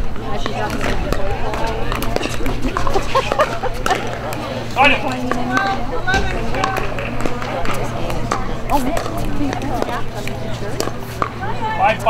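Spectator and player chatter with scattered sharp pops of pickleball paddles striking the plastic ball, over a steady low hum.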